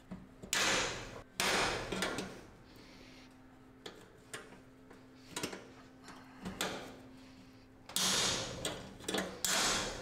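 Loud metallic knocks and clatter from tapping out the knockout in a steel garage door track, in bursts near the start and again near the end, with smaller taps between. It is stubborn metal that takes many blows to free.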